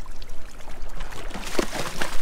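Water splashing and sloshing as a hooked blackfin tuna thrashes at the surface alongside the boat, loudest about a second and a half in, over a steady low rumble.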